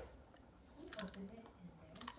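Toddler biting and chewing tortilla chips, with a few short crunches about a second in and again near the end.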